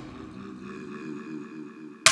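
Electronic music: a low synthesizer tone pulsing in a fast, even wobble, with a faint high tone above it and no drum hits until just after.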